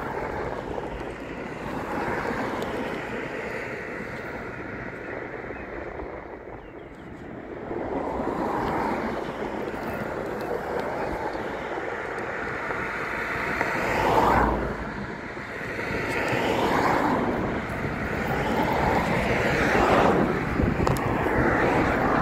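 Wind buffeting the microphone, with the hiss of passing road traffic swelling and fading several times.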